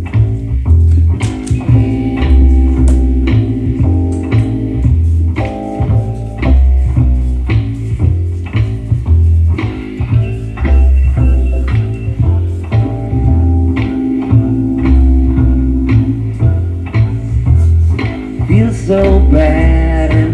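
Live rock band playing an instrumental passage: a heavy, repeating bass guitar line with electric guitar over it.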